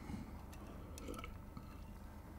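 Quiet room with a faint steady low hum and a few light ticks, some near the middle.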